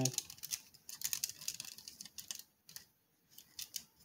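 Small plastic clicks and ticks as a transforming robot action figure is handled and its joints are moved, a quick irregular run that thins out after about two and a half seconds, with a few more clicks near the end.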